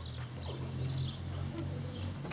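Birds chirping in short repeated calls over a steady low hum.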